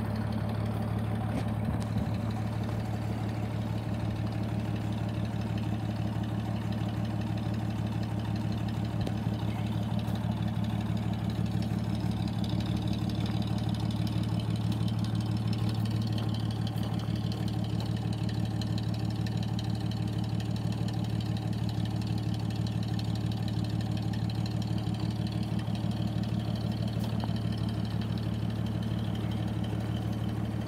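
1932 Chevrolet coupe's overhead-valve six-cylinder engine idling steadily.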